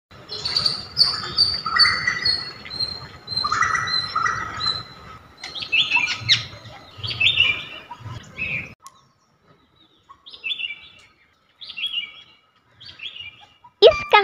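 Small birds chirping and tweeting in quick, repeated calls over a faint background hush. About nine seconds in, the hush drops away and only a few scattered chirps remain.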